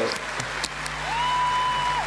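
Concert audience applauding, with a steady held high tone joining about a second in.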